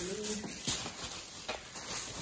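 Grocery packages and plastic shopping bags being handled: a soft rustle with a few light knocks and taps, after a brief hummed voice sound at the start.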